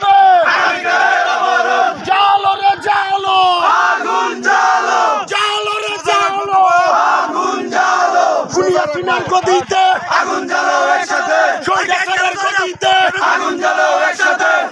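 A crowd of men shouting political slogans in unison, loud and continuous, in short repeated phrases.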